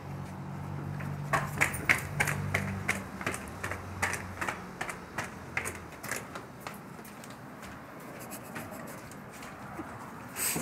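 Footsteps climbing stairs, a quick, uneven run of clicks and taps, over a steady low hum that stops about six seconds in.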